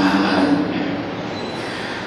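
A man's voice chanting a line of Arabic text, holding a steady note that fades out about half a second in, leaving a quieter, even sustained sound.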